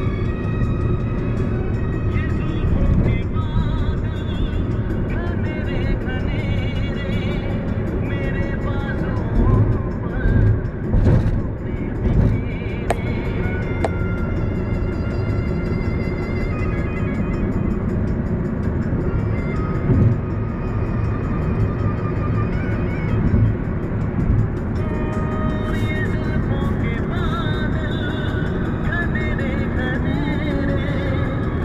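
Music playing over the steady low rumble of a car being driven.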